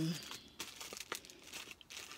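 Clear plastic bags crinkling faintly, with scattered light crackles.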